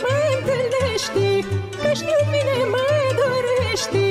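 Romanian folk song music: a wavering, heavily ornamented melody line over a steady, regular bass beat.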